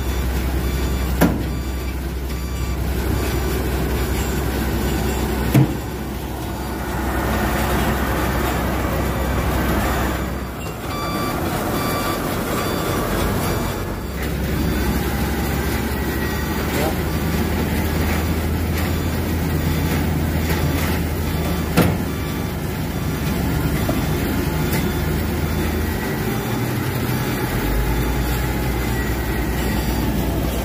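Heavy tow truck's diesel engine running steadily under load while pulling a stuck dump truck out of swamp mud, with a reversing beeper sounding and voices in the background. Three sharp knocks stand out, about a second in, about five seconds in and near two-thirds through.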